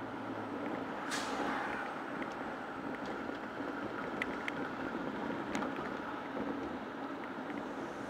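Steady traffic and road noise heard from inside a moving car in city traffic. About a second in comes a sharp air hiss from a city bus's air brakes, trailing off over the next second, and a few light ticks follow near the middle.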